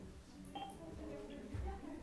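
Short electronic telephone tones at several pitches over the room's speakerphone as a call is placed to bring a remote participant into the meeting, with faint room murmur behind.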